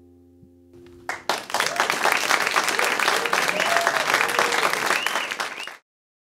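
The last guitar chord of a song ringing out and fading, then a small audience applauding, the applause cut off abruptly near the end.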